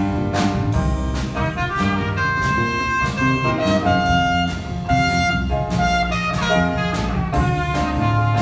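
A school jazz big band playing live: saxophones and brass holding melody notes over the drum kit, with drum and cymbal strikes keeping a steady beat.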